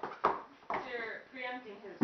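A single impact about a quarter second in, a body landing on a foam training mat as a partner is thrown, followed by men's voices.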